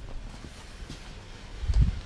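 Faint rustling and small clicks of movement, then a dull low thump near the end as the camera is carried out of the car.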